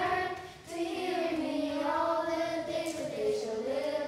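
A group of children singing a song together in unison, their voices held on long notes, with a short break for breath about half a second in.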